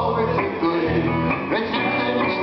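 Live rock song played on an electric guitar, with low bass notes changing every half second or so beneath it.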